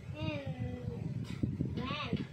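A young girl's voice slowly drawing out a falling, sung-like vowel as she sounds out a word, with a shorter voiced sound near the end.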